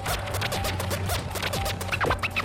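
Mahjong tiles clicking and clacking in a quick run as players handle and discard them on the table, over background music.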